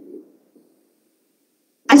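Near silence in a pause between phrases of a woman's speech. Her voice trails off at the very start and she begins speaking again near the end.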